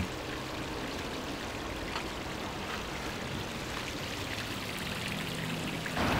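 Water flowing steadily, the even trickling and pouring of a shallow stream, with a few faint ticks.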